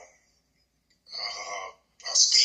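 A person's voice making one drawn-out sound, a little under a second long, about a second in.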